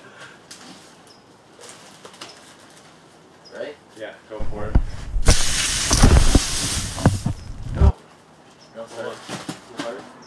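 A water-powered toy blimp launcher fed by a garden hose gives out a hissing rush of spraying water for about two seconds, a little past halfway through. Voices can be heard around it.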